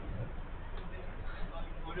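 Faint, indistinct men's voices of players calling out across the pitch, over a steady background hiss and low hum, with the muffled, narrow sound of a low-quality camera microphone.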